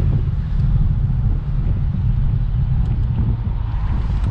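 1948 Chrysler Town & Country's straight-eight engine running at a steady cruise while driving, mixed with road and wind noise.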